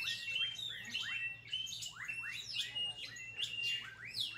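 Birds chirping, with many short rising and falling chirps, several overlapping, repeated throughout.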